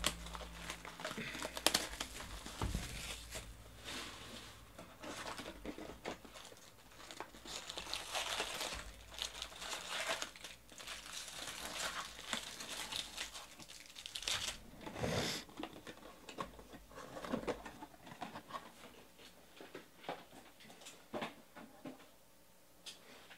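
Plastic shrink wrap being torn off a sealed 2018 Bowman Jumbo baseball card box, then the box's foil card packs crinkling as they are pulled out and stacked. The crinkling is busiest in the middle and thins out near the end.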